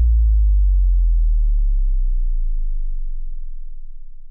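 A deep bass boom from a trailer's sound design ringing out. The low tone sinks slightly in pitch and fades steadily, nearly gone by the end.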